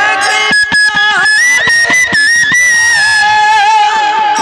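Kirtan instrumental interlude: a high, sustained melody line holding long notes over regular khol drum strokes and kartal hand cymbals.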